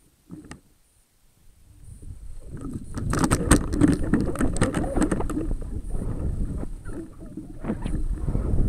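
Rushing air and crackling rattles on a high-altitude balloon's camera payload, building up from near quiet after about a second and a half and staying loud. This is the payload beginning to tumble and fall after the balloon bursts.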